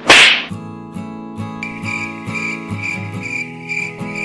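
A loud swoosh lasting about half a second at the start, then background music with a steady beat.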